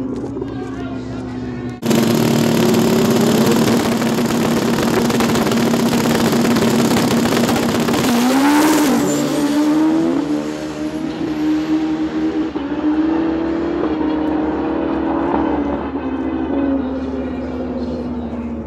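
Two Pro Street drag motorcycles at full throttle, their engines a loud roar that starts suddenly about two seconds in, with pitch rising and falling through gear changes, then fading as the bikes run away down the strip.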